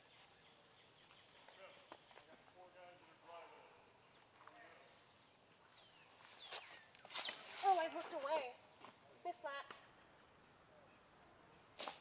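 A disc golf disc clipping trees in flight: two sharp knocks about half a second apart just past the middle. Around them is quiet woodland ambience with faint voices, and a voice speaks briefly right after the knocks.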